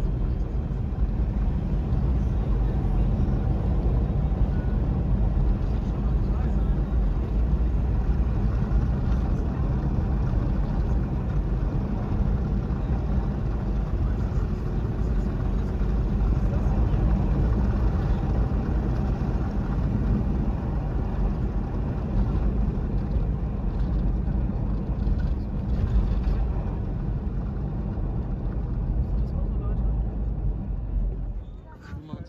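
A vehicle driving over a desert dirt track: a steady low rumble of engine, tyres and wind without letup.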